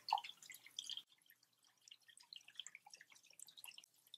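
Purified water poured from a plastic jug into a nearly empty glass aquarium, with faint, irregular splashing and dripping as the stream hits the shallow water on the tank bottom.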